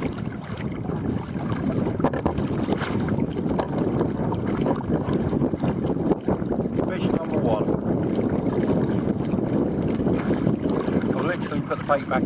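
Steady wind buffeting the microphone, with choppy sea water around a kayak.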